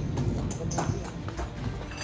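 Footsteps of several people walking on a tiled courtyard, a run of irregular knocks a few tenths of a second apart.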